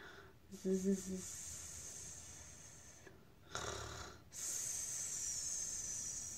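A woman's voice imitating sleeping hares: a short buzzing 'zzz' near the start, a snore drawn in at about three and a half seconds, then a long hissing 'sssss' breathed out.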